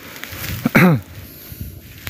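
Low wind rumble on the microphone, with one short voiced sound, like a brief hesitation noise from a person, a little under a second in.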